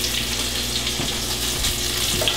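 Oat-coated herring fillets frying in hot oil in a pan, a steady sizzle with a small click about halfway through.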